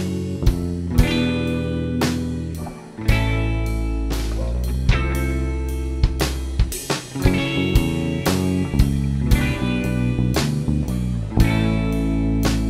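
Live band playing an instrumental passage without vocals: electric guitar and bass chords over a drum kit, with a harp also being played. The drums strike about twice a second. The band drops back briefly just before three seconds in, then comes back in full.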